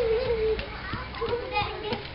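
Children's voices talking and calling out while they play.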